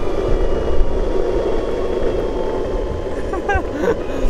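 Boosted electric skateboard rolling over asphalt: a steady rumble of wheels and motor with wind rushing on the microphone. A short bit of voice comes near the end.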